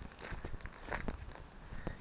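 Footsteps on a lane, a few irregular steps as the walker slows and stops.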